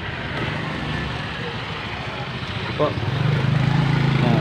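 A motor vehicle engine's steady low hum, getting louder in the last second.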